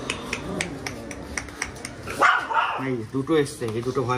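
A dog barks once, sharply, about two seconds in, with a man's low voice talking in the last second.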